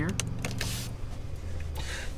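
Low, steady cabin hum of a 2022 Jeep Grand Cherokee idling at a stop, with a few light clicks just after the start and a brief rustle about half a second later.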